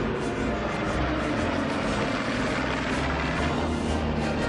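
Four-engine WWII piston bomber's radial engines and propellers droning steadily in a fly-by, mixed with background music.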